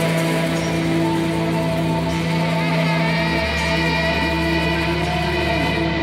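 Live rock band playing an instrumental passage with no vocals: sustained, held guitar tones over a steady bass line.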